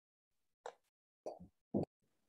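Three brief soft knocks or taps, a little over half a second apart, the last the loudest: a phone or computer being handled close to its microphone.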